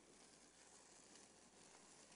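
Near silence: a faint, steady hiss of room tone, with no distinct sounds.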